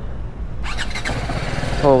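BMW motorcycle engine being cold-started, catching about half a second in and running on.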